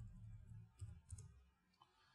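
A few faint, short clicks from a computer keyboard and mouse as a name is typed and confirmed, over a low room hum.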